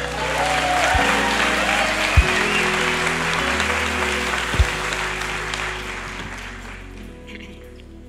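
Congregation applauding over soft background music with held chords. The clapping dies away over the last couple of seconds, and a few low thumps sound in its first half.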